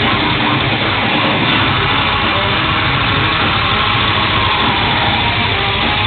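Live metal band playing at full volume: distorted electric guitar, bass and drums merged into a dense, steady wall of sound without a break.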